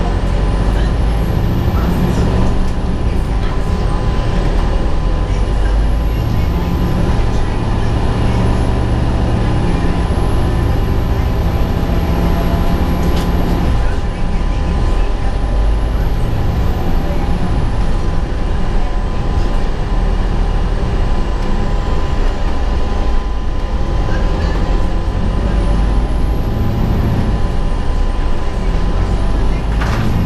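A 2003 Gillig Phantom transit bus heard from inside while under way: its diesel engine and drivetrain rumble, pulling harder and then easing off, while several steady humming tones run under a thin high whine that climbs and falls in pitch about four times.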